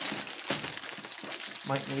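Plastic bubble wrap around a parcel crinkling and rustling as hands grip and turn it, a dense rustle lasting about the first one and a half seconds.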